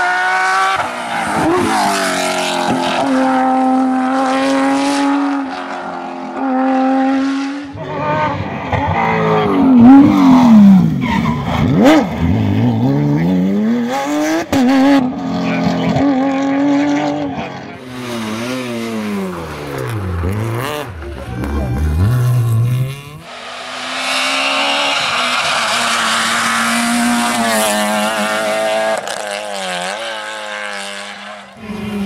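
Rally cars driven hard past the camera one after another, a Porsche 911's flat-six among them: engines revving high and dropping with gear changes and blipped downshifts under braking. The sound changes abruptly twice as one car's pass cuts to the next.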